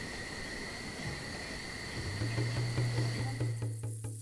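Night-time chorus of calling animals: a steady high-pitched drone that fades out near the end. A low sustained music note comes in about two seconds in.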